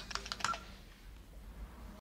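Quick clicks of keyboard typing, about half a dozen in the first half second, then stopping.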